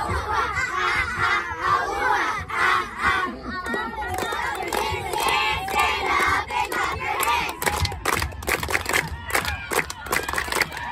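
A group of young girls shouting a cheer together, with a run of sharp hand claps over the last two or three seconds.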